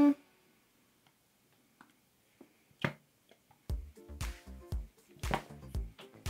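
A short hummed "mm", then near quiet with a few faint clicks, and background music with a steady beat comes in about two-thirds of the way through.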